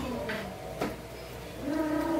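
A woman humming closed-mouthed "mmm" sounds of enjoyment as she chews, with a couple of sharp smacking clicks of eating; a short hum at the start and a longer one near the end.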